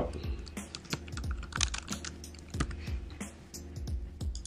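Computer keyboard typing: an irregular run of key clicks as a short line of text is typed, over steady background music.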